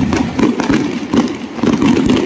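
Aerial fireworks going off, a loud continuous crackling and popping of bursting shells with repeated swells.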